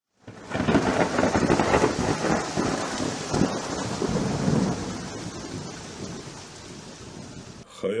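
Thunderstorm sound effect: rolling thunder over steady rain, starting abruptly, loudest in the first few seconds and gradually dying away.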